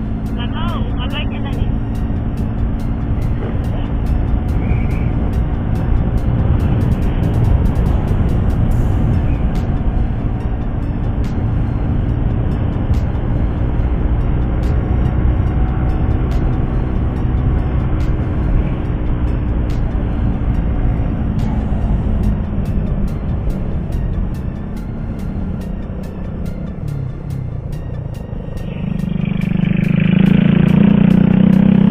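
Motorcycle riding along a highway: steady wind rush and engine hum as it cruises, easing off a little near the end.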